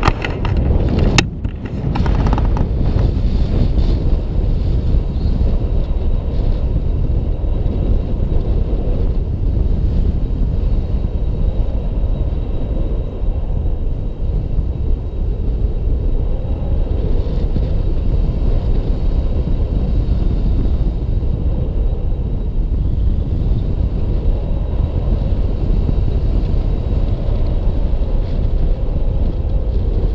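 Airflow in flight buffeting the microphone of an action camera on a selfie stick during a tandem paraglider flight: a steady low rumble of wind noise. A brief click and a short dip come about a second in.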